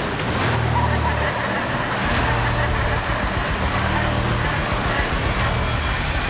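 Jacuzzi running: a steady rush of bubbling water and air, with a low pump hum that swells and eases.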